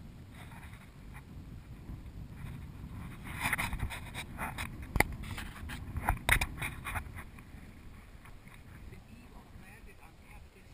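Low wind rumble on the microphone, with rustling and a run of sharp clicks and knocks from about three to seven seconds in, the loudest about halfway.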